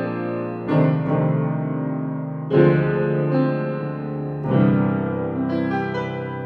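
Piano Noir virtual instrument, samples of an 1879 Guild & Sons square grand piano, playing slow chords in an old jazz house style. Three chords are struck about two seconds apart and each is left to ring, with lighter, higher notes coming in near the end.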